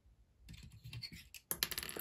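Light clicking and rattling of plastic Lego pieces as a built Lego model is handled, becoming a quick run of clicks in the last half-second.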